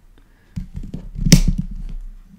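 Revolving leather hole-punch plier squeezed shut on a leather tab: a run of low knocks and rubbing from about half a second in, with one sharp click a little past the middle as the punch goes through.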